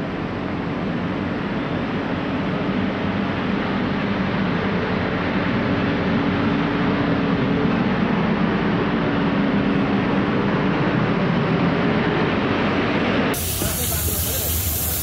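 Diesel engine of a JCB single-drum road roller running steadily as the machine rolls across grass, a low engine hum under a noisy rumble that grows slightly louder midway. Near the end it cuts abruptly to the hiss of a pressure-washer jet spraying pavement.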